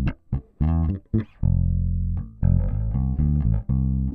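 Electric bass guitar playing a simple groove of plucked notes, some short and cut off, with one longer held note about a second and a half in.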